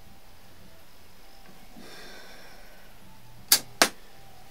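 Two sharp clicks about a third of a second apart near the end, over a quiet background. They are the piano-key switches on the front panel of a Belarus-59 valve radiogram being pressed.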